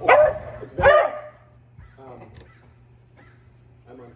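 Pet dogs barking: two loud barks about a second apart at the start, then quieter sounds.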